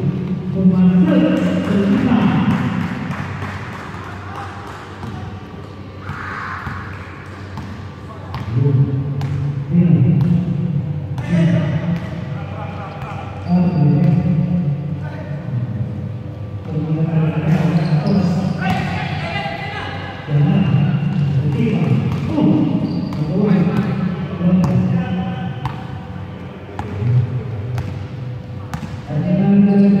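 A basketball bouncing and being dribbled on an indoor court, with players' voices coming and going in the echoing sports hall.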